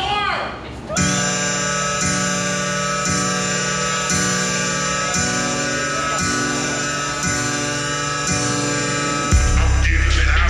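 Hip-hop backing track playing through a venue PA: a sustained chord pattern with a pulse about once a second starts about a second in, and a deep heavy bass comes in near the end. A brief voice is heard just before the beat starts.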